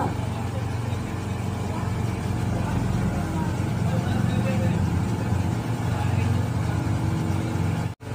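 A steady low engine-like hum, with faint voices in the background; the sound drops out briefly at the very end.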